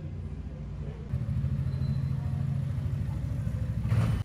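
A steady low rumble that grows louder about a second in.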